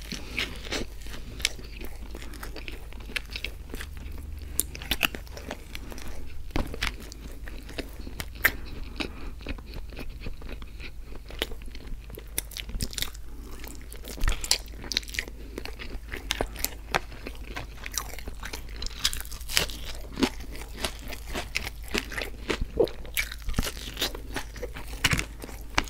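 A person biting and chewing close to the microphone, with many sharp wet clicks and smacks of mouth and food. The food is a soft biscuit, scrambled eggs and a hash brown. A faint steady low hum sits underneath.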